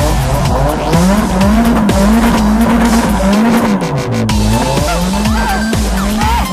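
A car drifting: engine revving up and down in long swells with tyres squealing and skidding on asphalt, mixed with background music.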